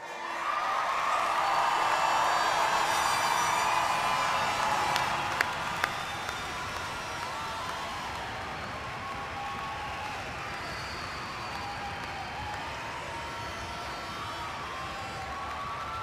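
A large crowd of graduates cheering and applauding, loudest over the first few seconds with many voices shouting at once, then settling into steadier clapping. Two sharp snaps stand out about five and six seconds in.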